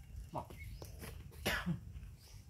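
Two short cough-like vocal sounds about a second apart, the second louder.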